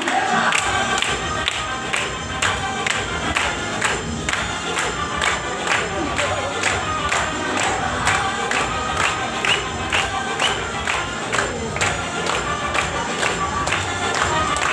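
Dance music with a steady beat, with the audience cheering and shouting over it.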